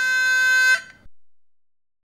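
Theme music ending on one long held bowed-string note, which cuts off about three-quarters of a second in; silence follows.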